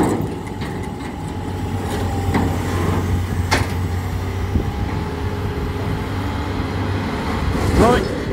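Excavator's diesel engine running steadily as it works a lifting magnet over scrap metal, with a few short metallic knocks from the scrap.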